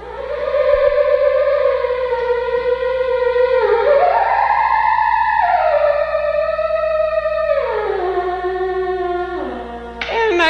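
Theremin playing a slow, rambling melody: one wavering tone that glides up a little past the middle, then steps back down to a low note near the end.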